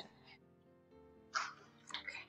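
A woman's short, sharp sniff while crying, about a second and a half in, with a smaller breath near the end, over soft background music with long held notes.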